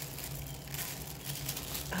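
Gift-wrapping paper crinkling and rustling in irregular little crackles as a small wrapped item is unwrapped by hand.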